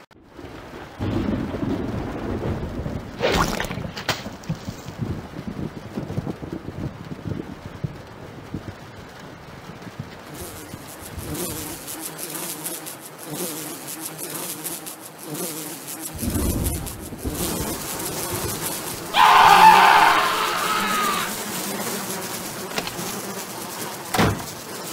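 Flies buzzing, with a louder pitched burst of sound about two-thirds of the way through.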